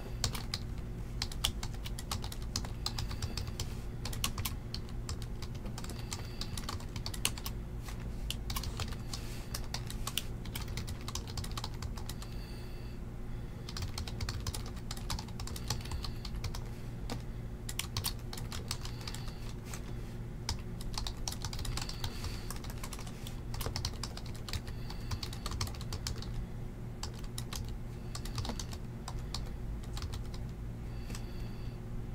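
Computer keyboard typing: rapid, irregular runs of key clicks over a steady low hum.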